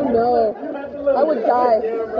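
Voices only: people chatting, with no other distinct sound.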